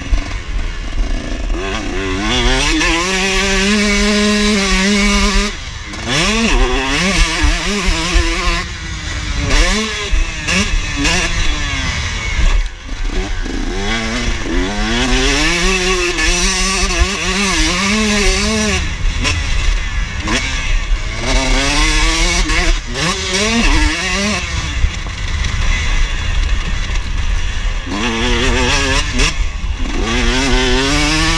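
KTM motocross bike engine revving up and falling off again and again as the rider opens and shuts the throttle around the track, with short drops near 6 and 13 seconds in. A steady low wind rumble sits on the bike-mounted camera's microphone.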